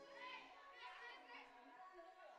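Faint, high-pitched voices calling out around a basketball court.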